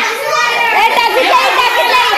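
Several high-pitched voices of women and children shouting and calling over one another, with no pause.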